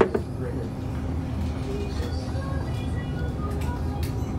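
Restaurant dining-room background: a steady low hum with faint background music, opened by one sharp knock.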